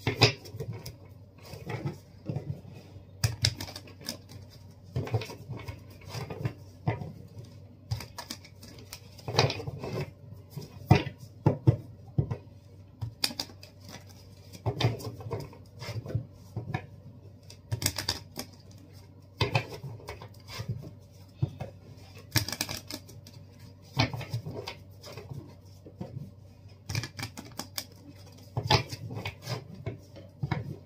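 A deck of tarot cards shuffled by hand: an irregular run of quick clicks and clacks as the cards slide and tap against each other.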